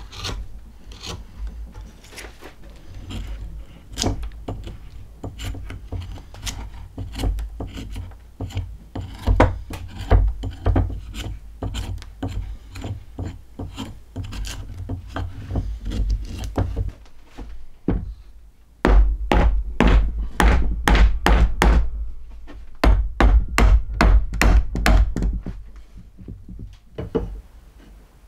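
Hand tools working green wood: a knife shaving a stick, then a hatchet hewing, heard as scraping cuts and sharp wooden knocks. About two-thirds of the way in the knocks become a rapid run of loud strikes.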